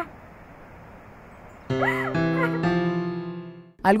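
A single high whimper that rises and falls, about two seconds in, over three sustained music notes that follow one another and fade out; before that only a low hiss.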